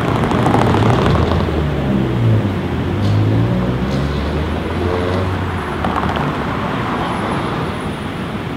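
Cars passing on a city street: an engine and tyre noise swell close by in the first few seconds, the engine pitch rising and falling as it goes by, then ease back to steady traffic noise.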